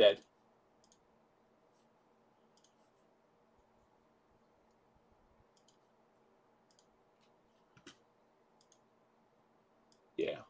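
Near silence with a faint steady electrical hum and a few faint clicks. The most distinct click comes about eight seconds in.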